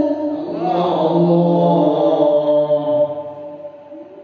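A man reciting the Qur'an in the melodic qiro'ah style through a microphone, holding long sung notes with a wavering ornament, then fading toward the end.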